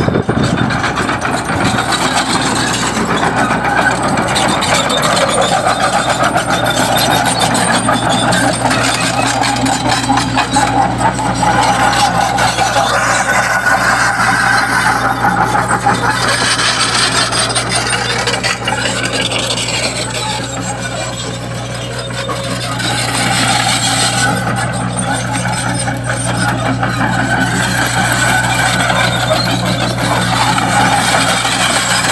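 Sumitomo long-arm crawler excavator's diesel engine running with a steady low hum as the machine travels on its tracks, dipping a little in loudness about two-thirds of the way through.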